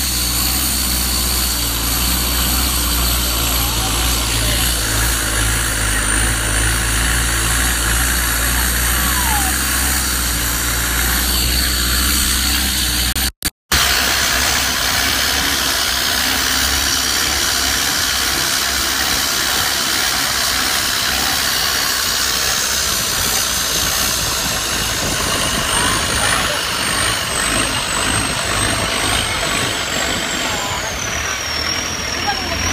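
Engine of a wooden long-tail boat running steadily under way, a loud continuous drone with the rush of water and wind. The sound cuts out for a moment about halfway through.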